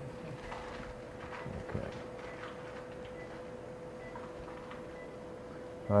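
Quiet operating-room background: a steady faint tone from running equipment, with a few faint ticks from instruments being handled.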